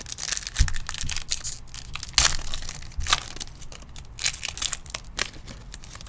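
A trading card pack's wrapper being crinkled and torn open by hand: a dense run of crackling with a few sharper rips, the loudest about two seconds in.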